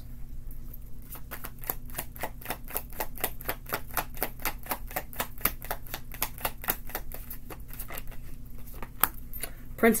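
A deck of tarot cards shuffled by hand: a quick, even run of crisp card clicks, about five a second, that starts about a second in and stops shortly before the end.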